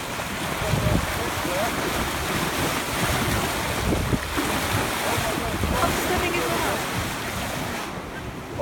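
Water rushing and splashing along the hull of a sailboat moving at speed through choppy sea, with wind buffeting the microphone.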